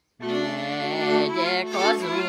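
Transylvanian Mezőség folk string band starts playing abruptly a moment in: held chords under a fiddle melody with vibrato.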